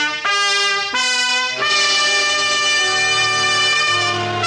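Brass-led orchestral theme music of a 1940s radio drama: a fanfare of held chords that changes several times in the first second and a half, then settles into one long sustained chord.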